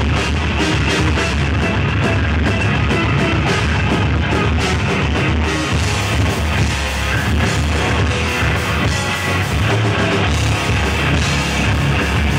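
Live rock band playing: electric guitars, bass guitar and drum kit together at a steady, loud level.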